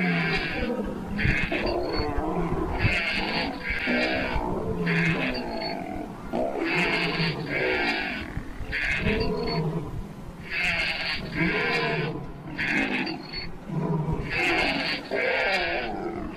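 A looped track of lion growls and roars mixed with higher animal calls, repeating the same pattern about every four seconds.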